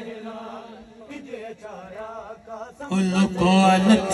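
Amplified male voice chanting a noha (Shia lament) with no instruments. The voice is softer and wavering for the first couple of seconds, then comes back loud on a long, steady held note about three seconds in.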